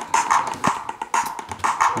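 Looping drum-machine samples sequenced in Tidal (clap, snare, bass drum and toms) playing through a laptop's speakers, a fast pattern of short hits, running forward in one speaker and reversed in the other.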